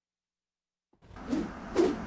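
About a second of dead silence, then a TV news graphics sting fades in with whooshing sweeps, building toward the traffic segment's open.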